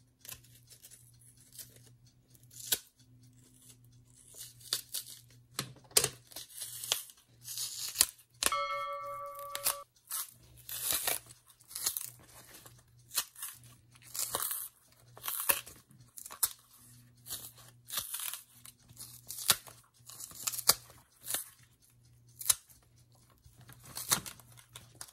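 Stiff green plantain peel being pried and torn away from the flesh by hand, in many short crisp rips and cracks, with a knife cutting into the skin at the start. A short, steady pitched tone sounds about nine seconds in, over a faint low hum.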